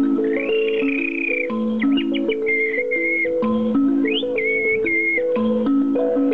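A toy instrument playing a repeating melody of short, even notes, with bird-like whistle calls over it: a rising glide about half a second in, a run of quick chirps near two seconds, and held whistled notes around three and five seconds.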